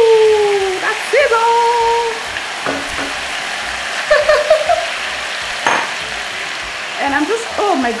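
Pepper paste of scotch bonnet peppers, onions, garlic and tomatoes sizzling loudly in hot vegetable oil in a pot, frying steadily as it is stirred with a wooden spoon. A voice lets out a few drawn-out exclamations over the sizzle, the loudest right at the start.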